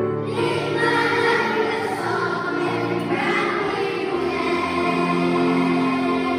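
Children's choir singing with piano accompaniment.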